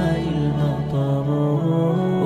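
Vocal-only Arabic nasheed as background music: men's voices holding long sung notes over a layered vocal drone, stepping between pitches, between the sung lines of the verse.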